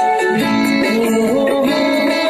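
Guitar strumming an A chord along with a recorded Hindi film song, its melody stepping upward through the middle.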